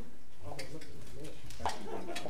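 Indistinct chatter of people in a meeting room, with a sharp click near the end.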